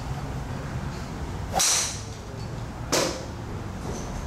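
Two sharp golf-driver strikes on a ball, about a second and a half apart. The first has a short, high metallic ring.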